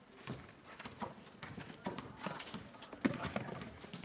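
Players' sneakers stepping and scuffing on a paved outdoor basketball court: irregular footfalls and knocks, the sharpest about three seconds in.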